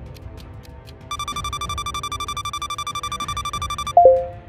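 Background music with a fast, steady electronic beeping alarm that starts about a second in, counting down the last seconds of a game timer to signal that time is running out. The beeping stops near the end as a louder, lower tone sounds when the timer reaches zero.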